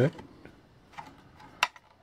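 Hard plastic toy parts handled in the hands: a faint click about a second in, then a single sharp click a little later. The parts are the hull and pieces of a GI Joe Cobra Piranha toy boat.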